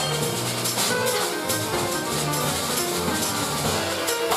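Jazz piano trio playing an instrumental passage: grand piano, upright double bass and a Yamaha drum kit with cymbals.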